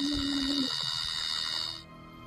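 Playback of a ghost-hunting audio recording: a brief steady low tone, under a second long, over the recorder's constant high-pitched whine and hiss, which cuts off shortly before the end. It is the stretch listened to for an electronic voice phenomenon, and the EVP was judged inconclusive.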